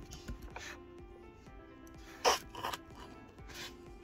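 Background music over soft clicking of keys being typed on the System76 Darter Pro laptop's keyboard. A short, louder rasp about two seconds in, with a second one just after.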